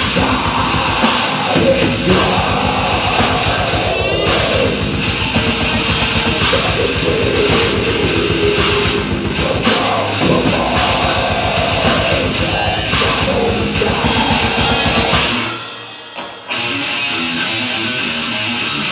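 Live technical death metal played by a nine-string electric guitar and a drum kit, with rapid kick-drum strokes and repeated cymbal crashes. About fifteen seconds in the drums stop abruptly, and after one short hit the guitar carries on alone, quieter.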